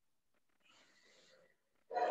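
Near silence, with a faint breathy hiss, likely breath into a headset microphone. A voice begins right at the end.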